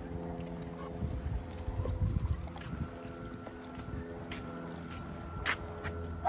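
Wind gusting on the microphone in uneven low rumbles, over a steady faint mechanical hum, with a couple of light clicks near the end.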